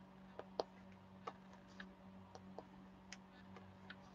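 Faint, irregular light clicks, about two a second, of a diamond-painting drill pen picking small resin drills from a plastic tray and tapping them onto the canvas.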